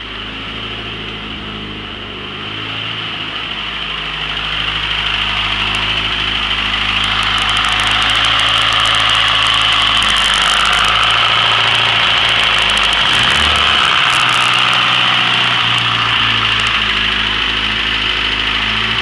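Car engine idling from a cold start, a steady idle with a strong high hiss over it and light ticking in the middle. It grows louder over the first several seconds as the microphone nears the open engine bay.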